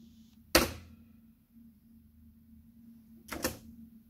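A sharp knock about half a second in and a quick double knock near the three-and-a-half-second mark, over a faint steady low hum.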